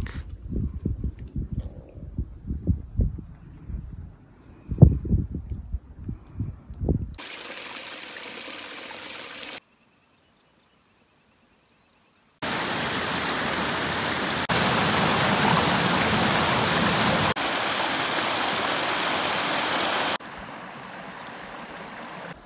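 Wind buffeting the microphone in low gusts. Then, after a stretch of silence, creek water running over small rocky cascades: a steady hiss that changes level abruptly a few times.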